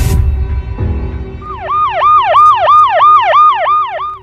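A whoosh with a low hit, over a steady music drone. About a second and a half in, a siren sound effect starts, swooping quickly up and down about three times a second, and it is the loudest part.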